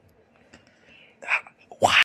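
Whispered, breathy vocal sounds from a person: a short breathy burst a little past the middle, then a louder one at the very end that rises in pitch.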